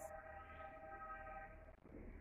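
A faint, steady tone of several pitches sounding together, held for about a second and a half and then fading away.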